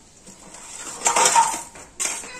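Stainless steel utensils clattering and clinking, loudest a little after a second in.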